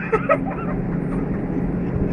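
Ship's engine machinery running with a steady low hum, with a short burst of laughing voices in the first half second.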